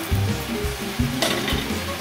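Sautéed vegetables sizzling in a hot skillet as they are tipped and scraped out onto a plate, with a couple of short knocks about a second in, over background music.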